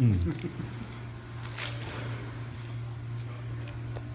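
A man chewing a mouthful of sandwich, faint mouth sounds and a few small clicks over a steady low hum, after a brief spoken 'yeah' at the start.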